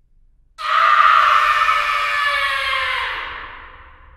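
A long, loud scream that starts about half a second in, then slowly falls in pitch and fades away over about three seconds.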